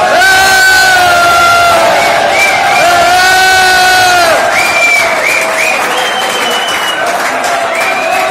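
A crowd of young men in a hall cheering and shouting. Two long, loud cries are held on one pitch in the first half, then come shorter cries over general crowd noise.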